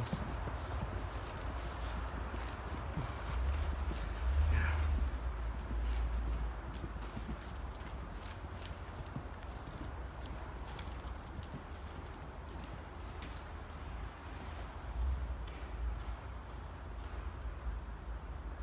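Footsteps in snow, a run of soft irregular steps, over a low rumble on the phone's microphone.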